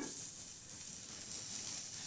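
A frying pan sizzling steadily on the stove, a soft even hiss.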